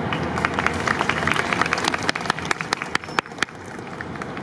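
Audience clapping: many separate claps that thin out and stop about three and a half seconds in.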